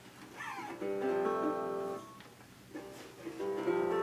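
Resonator guitar strummed: one chord about a second in rings for about a second and fades, and a second chord near the end rings on.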